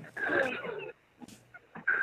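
A short, wheezy laugh in the first second, in reaction to a joke.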